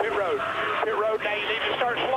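A voice over a race team's two-way radio, sounding thin and narrow as radio does, talking the driver down pit road.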